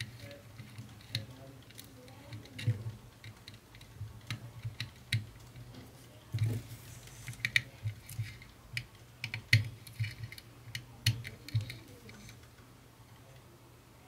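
Irregular small clicks and taps of a screwdriver and wire ends being worked into the screw terminals of a small circuit board, over a low steady hum; the clicking dies away near the end.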